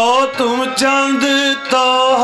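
Sikh kirtan: a male singer holds a long, wordless melodic line that bends in pitch, broken by two short breaths. Harmonium and a few tabla strokes accompany him.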